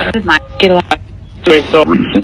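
Spirit box audio from a small handheld speaker: three short, choppy voice-like fragments over a steady hiss. They are heard as somebody repeatedly saying "get up".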